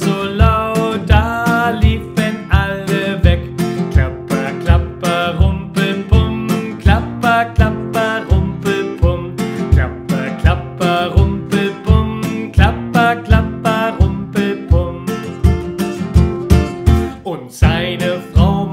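A man singing a children's song while strumming a capoed nylon-string classical guitar in a steady, even rhythm.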